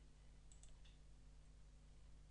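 Near silence: a few faint computer mouse clicks about half a second in, over a low steady hum.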